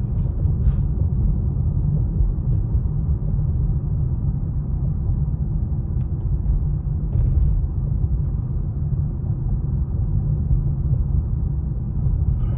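Steady low rumble of a car driving along at road speed, heard from inside the cabin: tyre and engine noise with no change in pace.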